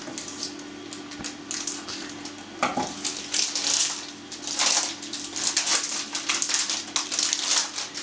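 Packaging of a roll of yeast puff pastry crinkling and rustling in irregular bursts as it is unwrapped by hand, busiest from a few seconds in.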